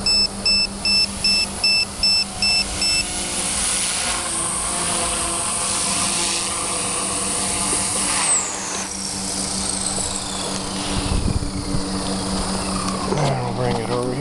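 RC helicopter's low-battery alarm beeping rapidly, about three or four beeps a second, for the first few seconds over the high whine of the Turbo Ace 352 motor. The motor whine holds steady, then falls steadily in pitch over about five seconds as the helicopter lands and its rotor spools down.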